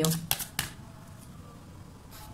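Tarot cards being handled: a few quick clicks as a card is drawn from the deck, within the first second.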